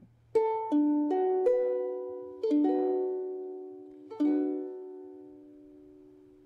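Ukulele sounding its open strings as an E-flat six chord, with no fingers on the frets. Four single notes are picked in quick succession, then the chord is strummed twice, each strum ringing out and slowly fading.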